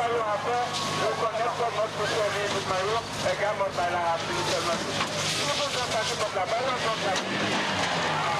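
Several voices shouting and calling at once over a steady low engine drone, with the hiss of a fire hose spraying water.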